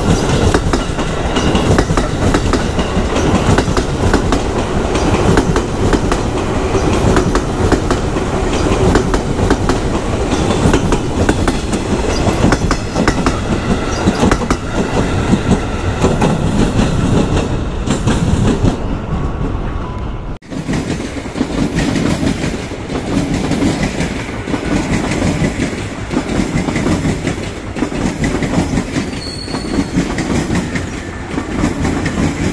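Electric commuter trains, among them an ex-JR 205 series set, running past close by, with dense clattering of wheels over rail joints. The sound breaks off abruptly about two-thirds of the way through and picks up again with another train passing.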